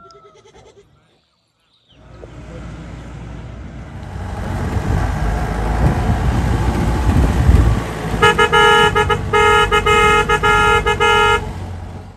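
A vehicle driving on a rough dirt road, its engine and road noise building up over several seconds. This is followed by a vehicle horn sounding in a string of short honks for about three seconds.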